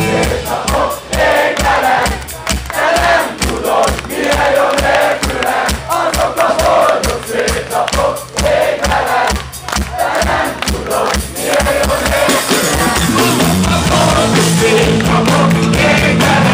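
Live rock band playing with a steady drum beat while the audience sings along loudly, heard from inside the crowd.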